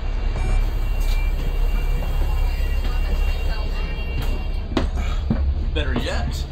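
Low, steady engine rumble of a double-decker bus, heard from inside as it idles at the stop. Short high electronic beeps sound in the first second, then a steady high tone holds until near the end, when a few sharp knocks come.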